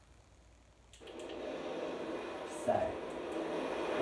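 A recording of ocean waves starts about a second in, with a sudden onset. It is a steady rushing sound of surf that swells louder. A short louder sound comes about two-thirds of the way through.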